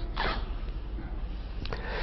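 Pause in a man's lecture: faint steady room hum with one short breathy sniff about a quarter second in and a faint click near the end.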